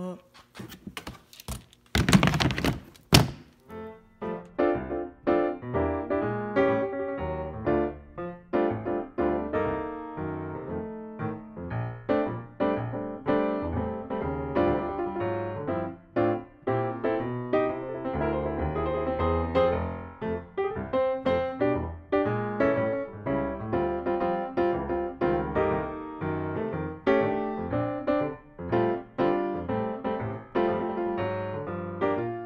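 A few loud thuds and rustles in the first three seconds, then piano background music for the rest.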